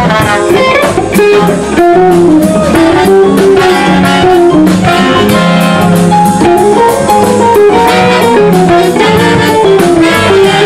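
Live jazz band playing a medium swing tune, with an electric archtop guitar carrying a winding single-note line over bass and drums.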